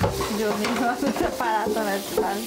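Indistinct voices talking over a steady kitchen hiss from work at the sink.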